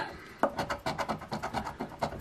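A large coin scratching the coating off a scratch-off lottery ticket on a wooden tabletop in quick repeated strokes, with one sharper tick about half a second in.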